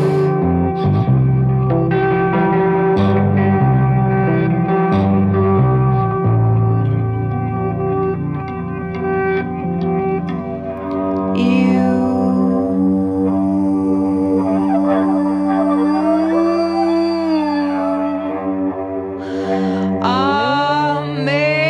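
Pencilina, a homemade double-necked electric string instrument, played with a stick through effects: struck, ringing notes with echo, then from about halfway a long held tone whose pitch slowly rises and falls.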